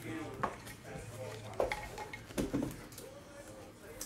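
Trading cards being picked up and handled close to the microphone: a few light clicks and taps as the cards are knocked together and set down, with faint talking in the background.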